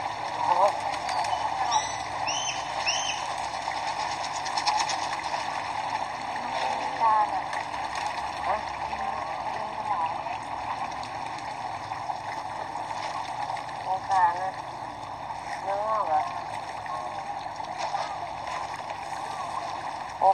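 Faint voices talking in the background over steady outdoor noise, with three short high chirps about two seconds in.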